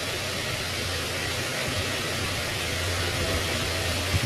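Steady background hiss with a low mechanical hum, like a fan or motor running, with no distinct knocks or voices.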